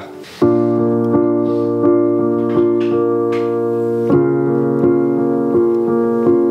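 Piano playing sustained chords that come in about half a second in, with chords struck at a steady pulse, about one every three-quarters of a second. The harmony changes about four seconds in.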